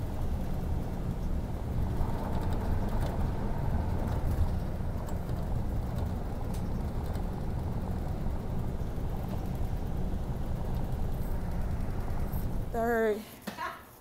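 Steady low road and engine rumble inside a coach bus cruising on a highway. It cuts off near the end, where a woman's voice begins.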